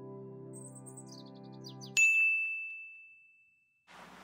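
A held synth chord with a quick falling run of high tinkling notes over it. It is cut off about two seconds in by a single bright ding that rings and fades away.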